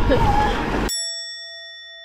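A bell-like ding sound effect starts about a second in: all other sound cuts out abruptly and one clear tone rings on, slowly fading. Before it, a voice over outdoor noise.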